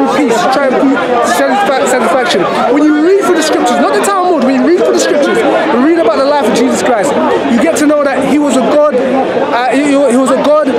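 Speech only: a man talking steadily, close to the microphone.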